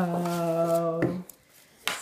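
A person's voice holding one level, drawn-out vowel for about a second after a short downward slide, like a long "aww", then dropping away. A single sharp click comes near the end.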